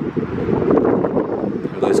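Wind buffeting the microphone, a loud, steady low rumble.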